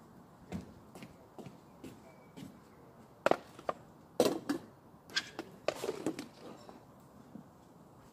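Footsteps on wooden decking, about two a second, followed by a run of sharp clicks and clatters as a metal spoon knocks and scrapes in a plastic tub and the tub's lid is put on; the loudest knocks come about three and four seconds in.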